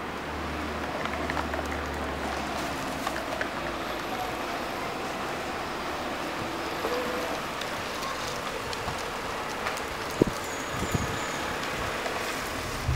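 Street ambience with a Renault saloon car driving slowly up the street toward the microphone and passing close near the end, with a few short thumps shortly before it arrives.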